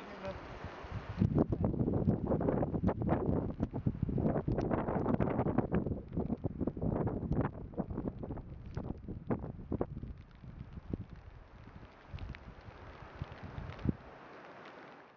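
Wind buffeting the microphone in irregular gusts, mixed with crunching knocks. It is loudest from about a second in until around ten seconds, then dies down.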